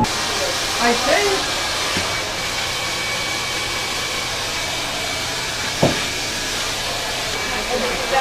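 Handheld hair dryer running steadily, a rush of air with a faint high whine over it. A single sharp knock about six seconds in.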